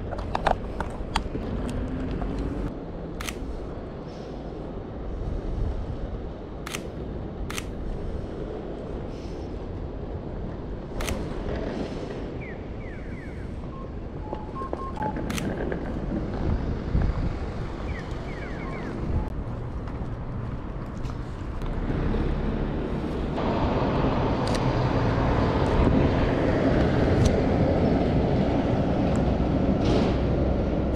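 Outdoor street ambience with traffic and low rumbling noise on the microphone, broken by several sharp clicks of a mirrorless camera's shutter in the first half. The background noise grows louder about two-thirds of the way through.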